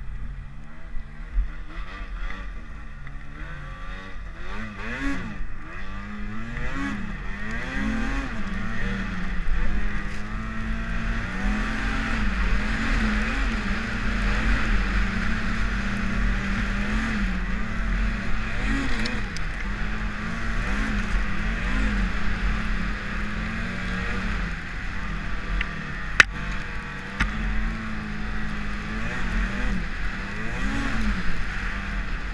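2014 Arctic Cat M8000 Sno-Pro snowmobile's two-stroke twin engine running under way, its revs rising and falling again and again as the throttle is worked. A single sharp click comes near the end.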